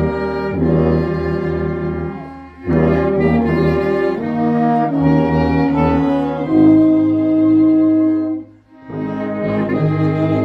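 Small mixed ensemble of bowed strings, clarinet, trombone, euphonium and tuba playing sustained chords together. There is a brief break in the sound about two and a half seconds in, then a long held chord from about six and a half seconds that cuts off suddenly, after which the playing resumes.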